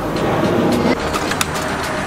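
An irregular string of sharp clicks and crackles over steady outdoor background noise.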